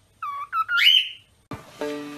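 Cockatiel whistling: a few short chirped notes, then a longer whistle that rises in pitch, all within the first second or so. About a second and a half in, electronic music with held notes takes over.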